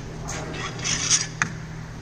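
The finned cylinder of a Honda Twister motorcycle engine being pulled up off its studs and piston by hand: a scraping, rustling slide of metal on metal, ending in a sharp click a little after a second in.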